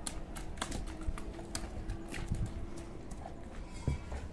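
Scattered wet slaps and clicks, a few a second and irregular, from feet stepping on a soaked carpet on concrete and hands pulling at it, over a low rumble.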